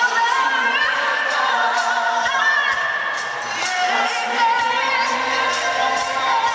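Live pop ballad vocals: a woman's voice and men's voices singing in harmony with vibrato over band backing and a soft steady beat, heard from the audience in a large echoing arena.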